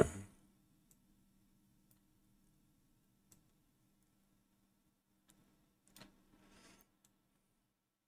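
A few faint, scattered computer mouse clicks, one every second or two, over a low steady hum of room tone.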